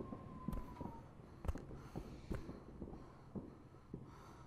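Faint soundtrack of an animated war film playing in the background: a steady high tone that fades out about a second in, with a few scattered soft knocks.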